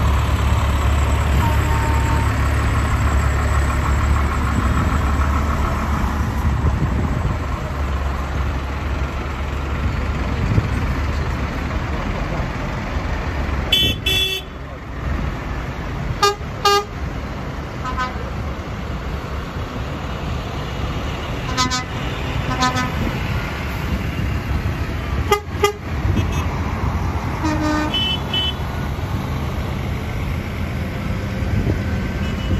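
Tractors and other heavy vehicles in a slow procession passing close: engines running with a deep rumble that is heaviest in the first few seconds, and tyres on wet tarmac. Short horn toots sound repeatedly from about halfway through until near the end.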